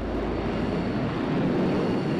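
Jet engine noise from a McDonnell Douglas F-4 Phantom in flight, heard as a steady, even noise.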